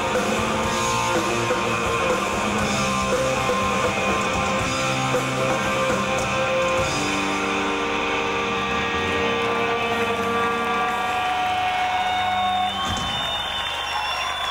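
Live rock band playing loud, with distorted electric guitars, electric bass and drums. About a second before the end the drums stop and a few guitar notes are left ringing as the song finishes.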